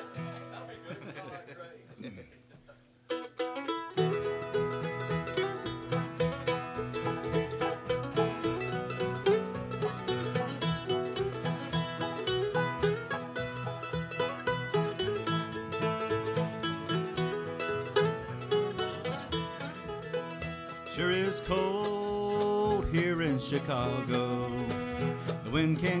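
Bluegrass band of banjo, mandolin, fiddle, acoustic guitar and upright bass playing. The first few seconds are quiet, then the instrumental kick-off starts about three seconds in, and a lead vocal comes in near the end.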